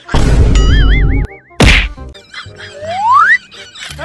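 Edited-in cartoon comedy sound effects. First comes a loud noisy burst with a wavering whistle over it, then a sharp whack about a second and a half in, and then a short rising whistle near the three-second mark.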